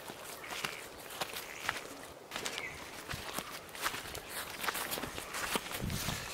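Footsteps on soil strewn with dry fallen leaves, a string of irregular crunches and snaps.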